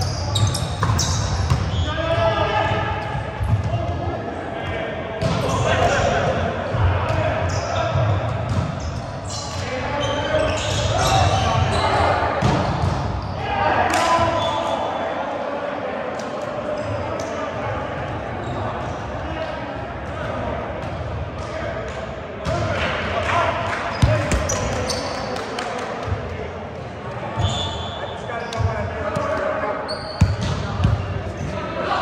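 Players' voices calling out across a reverberant gymnasium during an indoor volleyball game, with scattered sharp knocks of the volleyball being hit and bouncing on the hardwood floor.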